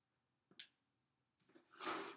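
A faint scuff about half a second in, then a louder short scraping, handling noise near the end as a clear plastic container is grabbed on a tile floor.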